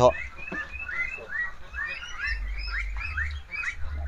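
A flock of young meat ducks peeping: many short, rising, high calls repeating two or three times a second, over a low rumble.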